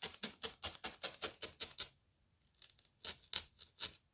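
A felting needle jabbed quickly and repeatedly through wool roving into a foam block, about five stabs a second. The stabbing stops about two seconds in, then starts again for another second or so.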